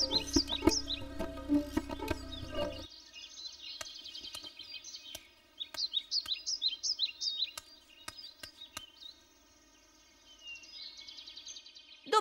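Background music with birds chirping over it for about the first three seconds; the music then cuts out and birds go on chirping on their own, with a few sharp clicks. There is a brief near-quiet stretch before the chirping returns near the end.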